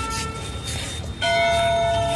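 A temple bell is struck about a second in, and its several ringing tones hold on and slowly fade. The fading ring of an earlier strike is heard at the start, over a steady low rumble.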